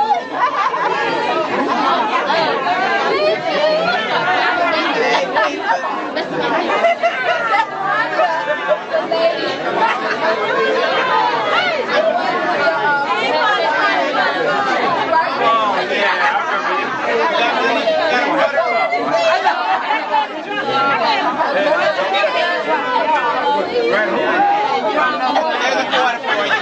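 Overlapping chatter of many people talking at once, with no break, as guests greet one another.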